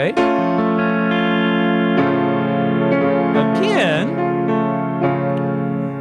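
A keyboard sustaining an A augmented chord, with pedal steel guitar notes sounding against it. About three and a half seconds in, a pitch slides down and back up.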